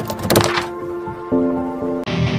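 Logo intro jingle: music of held notes with a couple of sharp hit sound effects in the first half second, and a new lower note entering about a second and a third in.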